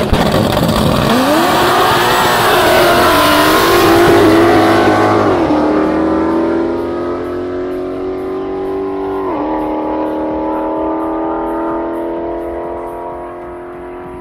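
Two drag-race cars, a supercharged 5.0 V8 Ford Mustang GT and a turbocharged straight-six BMW E34, accelerating at full throttle down the quarter mile just after the launch. Engine pitch climbs and drops sharply at each upshift, about three times, and the sound fades as the cars pull away.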